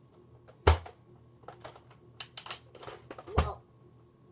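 Plastic clicks and clacks from a Nerf AccuStrike AlphaHawk bolt-action blaster being handled. There is a sharp clack about a second in, a run of smaller clicks, and another loud knock near the end.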